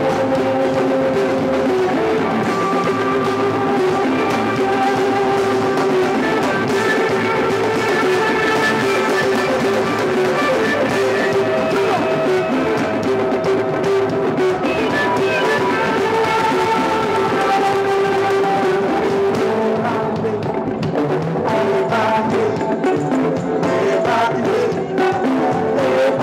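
Live Mardi Gras Indian funk band playing: drums and congas keep a steady beat under held instrumental notes.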